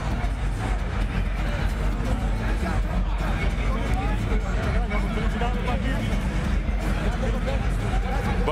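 A large arena crowd at a boxing match: a dense, steady din of many voices over a continuous low rumble.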